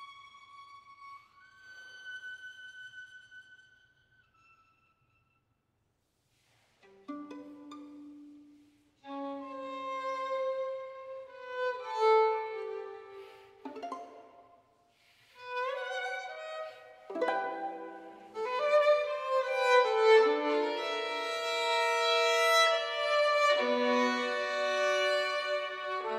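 Solo violin: a high note fades, a soft held high note dies away, and after a few seconds of near silence the violin comes back in low and builds through separate bowed phrases into loud multi-note chords near the end.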